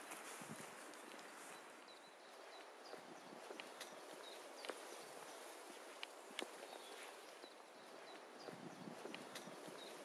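Faint footsteps on a mountain hiking trail, irregular light steps over an even background hiss.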